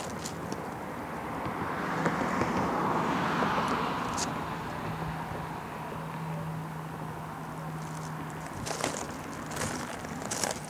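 A car passing: a swell of road noise that rises and fades over about three seconds, then a steady low hum with a few light clicks near the end.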